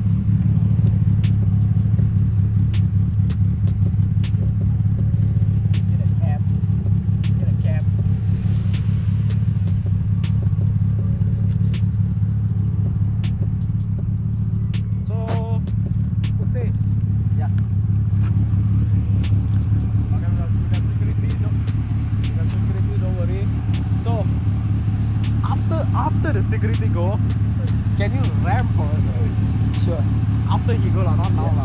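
Proton Putra's 4G93 twin-cam four-cylinder, fitted with 272 high cams, idling steadily at the exhaust with an even pulsing note. Faint voices come in near the end.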